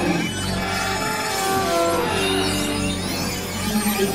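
Electronic music built from whale-song material: layered held tones over a steady low drone, with faint high gliding whistles partway through.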